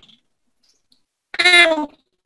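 A man's voice pitched up by a video-call audio glitch into a chipmunk-like squeak, heard in one short burst about a second and a half in after a silence.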